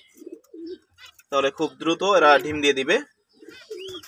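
Pigeon cooing in the background: short, low notes in the first second and again just before the end.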